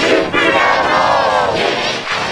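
Commercial or logo jingle audio put through a 'G-Major' edit: pitched low and layered into a thick, distorted chord. A long voice-like tone arches up and then down in the middle.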